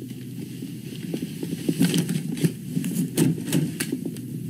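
Rustling, shuffling and light knocks of belongings being handled and set down, with several small knocks in the second half.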